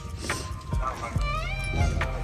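Background music: a melody line that slides up into held notes.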